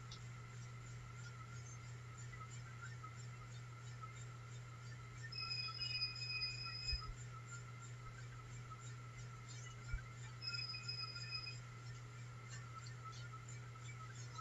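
Two high-pitched electronic alarm beeps from an LTS DVR's audible warning, set off by a motion sensor wired to the recorder's alarm input. The first beep lasts about a second and a half and the second about a second, a few seconds apart, over a faint steady hum.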